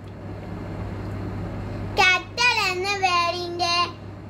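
A young girl singing in long held notes, starting about halfway in after a pause in which only a steady low hum is heard.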